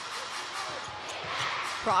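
Basketball being dribbled on a hardwood court: a run of low bounces.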